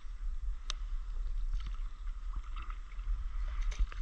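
Water swishing and splashing around a stand-up paddleboard as it is paddled across calm water, over a steady low rumble of wind on the microphone. A few sharp clicks come through, one just under a second in and several near the end.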